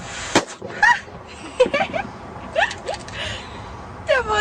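A blown-up rubber balloon bursting with a single sharp bang about half a second in, followed by several short vocal sounds from a person.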